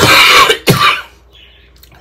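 A woman coughing twice, loud and harsh, the second cough shorter than the first: a lingering cough.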